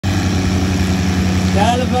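Al-Ghazi 480 tractors' three-cylinder diesel engines running steadily with an even low pulse. A man calls out near the end.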